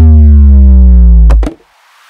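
Cartoon sound effect: a loud synthesizer tone sliding slowly down in pitch for about a second and a half, cut off by two quick clicks, for a plastic bottle falling into a recycling bin and its lid shutting.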